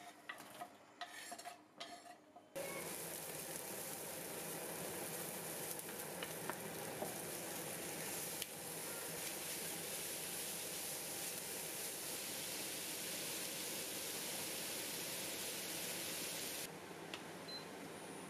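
A few light knocks as diced onion is tipped from a wooden board into a frying pan, then, from about two and a half seconds in, a steady sizzle of onion and beef mince frying in oil, stirred with a wooden spoon. The sizzle drops a little near the end.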